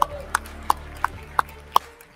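Applause from members in a large legislative chamber: sparse clapping in which a few sharp handclaps stand out at about three a second, with fainter claps scattered between.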